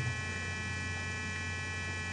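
Steady low electrical hum with faint high, constant tones above it.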